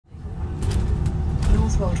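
Low rumble and rattling inside a moving London bus, with a few sharp clicks in the first second and a half; the recorded iBus stop announcement voice begins near the end.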